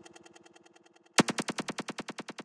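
Rapid machine-gun-like stutter from the GRM Freeze plugin looping a tiny frozen grain of audio, about a dozen repeats a second. A fading stutter gives way about a second in to a sudden, much louder one, which then dies away repeat by repeat.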